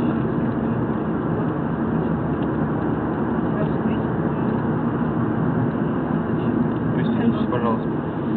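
Steady road and engine noise heard inside the cabin of a moving car, even and unchanging throughout.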